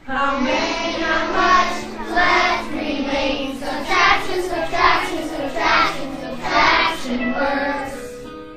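Third-grade children singing together in a regular, chant-like rhythm. The singing starts suddenly and fades out near the end.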